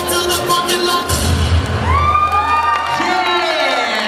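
A hip-hop dance track with a steady beat plays and stops about two seconds in, giving way to an audience, children among them, cheering and whooping with long rising and falling cries.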